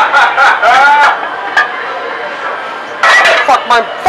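Indistinct voices talking in a kitchen, with a short sharp clink about one and a half seconds in, likely metal pans, and a quieter steady background between the bursts of talk.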